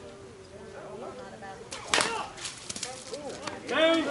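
A slowpitch softball bat hits the ball with one sharp crack about two seconds in, leaving a brief ringing tail. A player's voice calls out loudly near the end.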